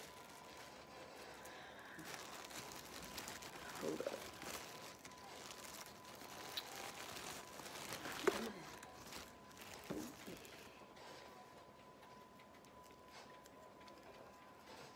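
Plastic bag crinkling and rustling as cannabis buds are handled and crumbled apart by hand, with a few brief murmured vocal sounds. A faint steady high tone runs underneath.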